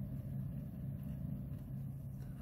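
A steady low hum with no other event.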